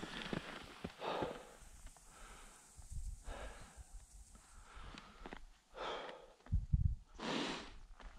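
A tired skier breathing while resting on a steep slope, a soft breath every second or two. A few low thumps near the end.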